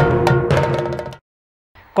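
Percussion music of drums and ringing metal percussion, with a few sharp strikes, fading out about a second in and followed by a short silence.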